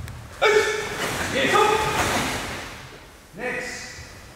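A voice shouting three short, pitched calls, about a second apart and then after a longer gap, echoing in a large sports hall.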